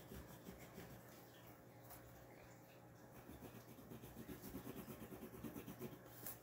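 Faint scratching of colored pencils shading on paper, in quick back-and-forth strokes that grow a little louder after about three seconds.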